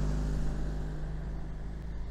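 A small van driving past on the road and away, its engine and tyres gradually fading.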